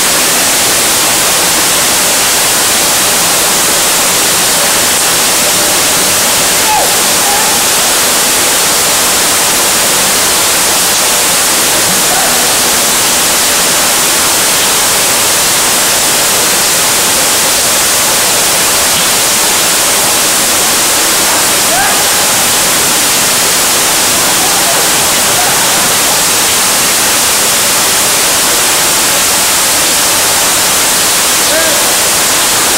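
Rain falling steadily, a dense even wash of noise, with faint voices calling out a few times.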